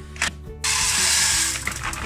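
Popcorn kernels poured into a steel wok with oil, a loud rush of noise setting in a little over half a second in and lasting about a second, with music underneath.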